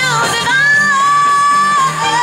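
Pop song with a singer holding one long, steady note over the backing track, after a short wavering phrase at the start.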